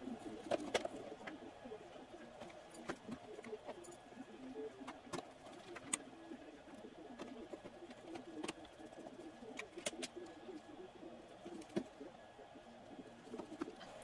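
Faint, scattered clicks and ticks of a screwdriver driving the screws that hold the radio's aluminium front panel, over a faint, low, warbling background sound.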